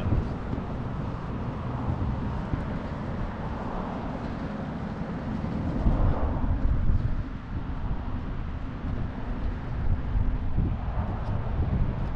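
Wind rumbling on the microphone outdoors, with a steady rush of background noise and a stronger gust about six seconds in.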